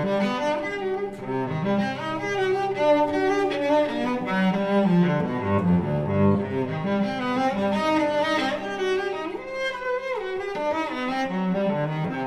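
Solo cello playing an étude in fast slurred arpeggios that sweep up and down across the strings.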